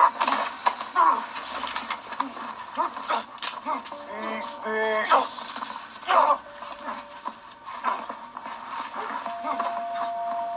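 Television drama audio of a struggle: short vocal grunts and cries, scuffling knocks and clicks, and a few held notes of background score.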